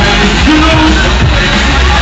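Live drum and bass playing loudly over a club sound system, with a heavy, steady bass underneath.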